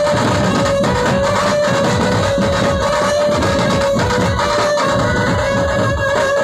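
A dhumal band playing loud instrumental music through its loudspeaker rig: a held, steady melody line over continuous drumming.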